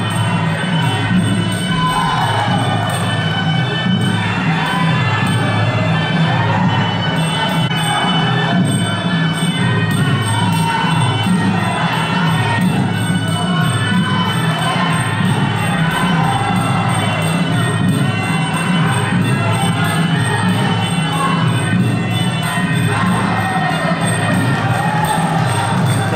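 Traditional Kun Khmer ringside music playing throughout the bout: a wavering reed-pipe melody over a steady drum beat.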